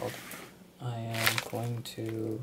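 Mostly a man's voice talking, with drawn-out syllables in the second half. Under it, the crinkle of a plastic mailer bag being handled and torn open, mainly near the start.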